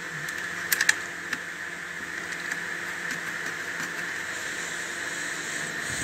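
A few light plastic clicks about a second in, then one more, from fingers handling the red fuse holder on an amplifier's rear panel, over a steady background hiss.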